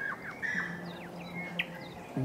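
Birds chirping, a scatter of short, quick chirps that sweep down in pitch, over a low held note that comes in about a quarter of the way through.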